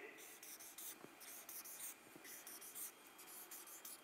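Marker pen drawing quick short strokes on a flip-chart pad: a faint run of high scratchy strokes, one after another.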